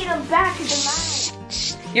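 Tissue paper rustling as it is pulled out of a present: a hiss lasting about half a second, then a shorter one, over background music.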